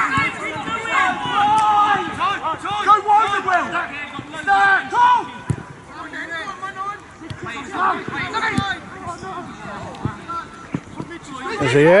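Men's voices shouting and calling out across a football pitch during open play, with a couple of sharp knocks of the ball being kicked.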